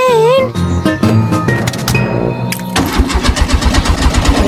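A short music phrase, then from about three seconds in a car engine cranking over fast and evenly on its starter without catching: the engine won't start because the tank is out of petrol.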